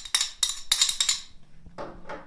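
A metal spoon scraping and clinking against a small ceramic dish in several quick strokes over the first second, as minced garlic is scraped out of it, then quieter.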